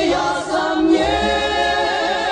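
Music: a backing vocal ensemble singing, then holding a chord with vibrato from about a second in, in an orchestrated pop recording.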